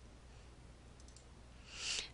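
Near silence with a few faint computer-mouse clicks about a second in, then a breath drawn in near the end.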